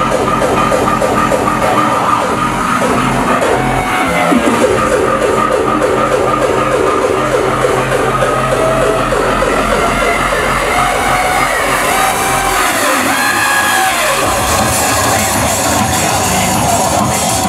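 Loud electronic dance music from a DJ set, played over a club sound system. The deep bass drops out for a couple of seconds near the end before returning.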